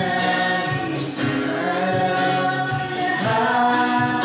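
A man and a woman singing a Tagalog song together in duet, accompanied by a strummed acoustic guitar.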